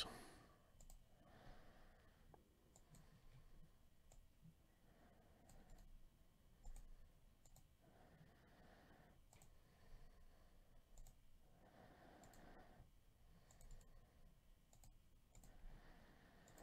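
Near silence: faint room tone with scattered, quiet computer mouse clicks.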